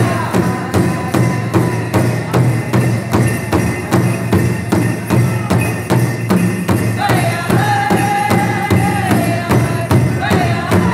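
Pow wow drum group: a large drum struck in a steady beat of about three strokes a second, with singers' voices over it. High, held singing comes in about seven seconds in.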